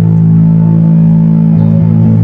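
Electric bass guitar played through an effects pedal board and heard loud from its bass cabinet: sustained low notes held steadily, with the notes changing about one and a half seconds in.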